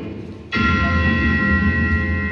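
A bell struck once about half a second in, ringing on with several steady pitches that slowly fade.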